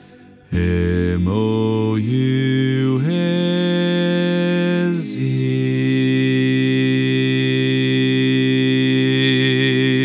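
Four-part a cappella barbershop harmony, all four parts sung by one multitracked man, with the bass part brought forward in the mix. The singing starts about half a second in, moves through several quick chord changes on the spelled-out words, and settles on a long held final chord from about five seconds in.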